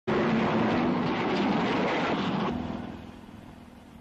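Car and road traffic noise, loud for about two and a half seconds, then fading down.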